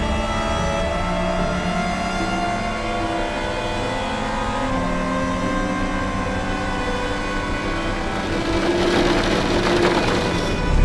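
Porsche 911 GT race car's engine running at speed on the straight, heard onboard, holding a fairly steady pitch with a few step changes; a rising rush of noise builds near the end.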